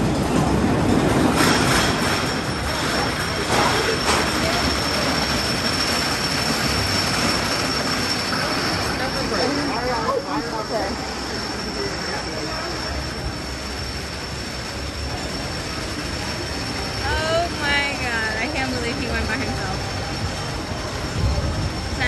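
Wooden roller coaster train rolling out of the station and up the lift hill: a continuous rumbling clatter with a steady high whine, and a couple of knocks in the first few seconds.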